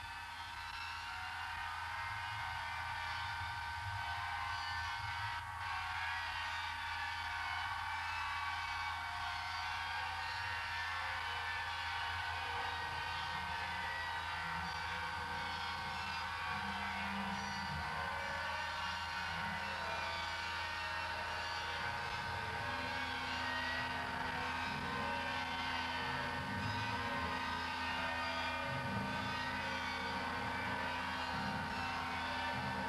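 Analogue synthesizer electronic music: two steady high sustained tones over a hiss-like band of noise, fading in at the start, with lower shifting tones entering about halfway through.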